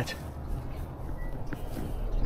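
Outdoor background noise with a steady low rumble, with no clear event standing out.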